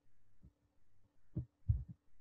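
A pause with a faint steady electrical hum and two short, soft low thumps in the second half.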